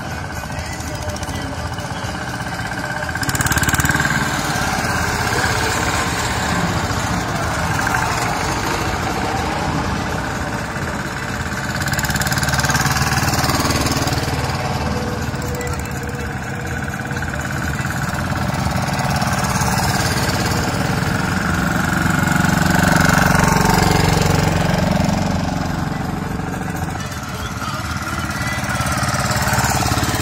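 Two-wheel walking tractors pulling trailers pass one after another, their small single-cylinder engines chugging with a rapid knock, swelling louder as each one goes by. Crowd voices murmur underneath.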